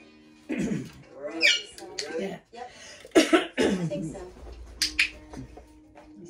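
A macaw giving a series of loud, harsh squawks and calls, one with a falling pitch and the loudest about three seconds in. Faint background music runs underneath.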